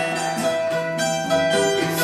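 Acoustic guitar and a second small plucked string instrument playing an instrumental passage together, with a strummed chord about a second in.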